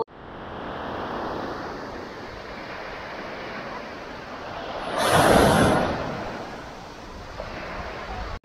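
Small sea waves washing up on a coarse, pebbly shore, with one louder wave swelling about five seconds in.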